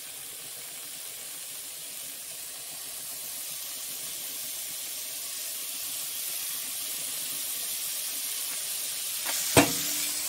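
Raw beef burger patties sizzling and steaming in a frying pan with a little water: a steady hiss that slowly grows louder. Near the end comes a sharp knock, which is the glass pan lid being set down over them.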